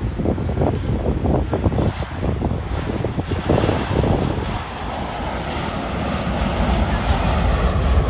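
Jet engines of a Boeing 787 airliner on low final approach: a broad rumble and hiss that grows louder as the plane nears. Wind buffets the microphone in rough gusts during the first few seconds.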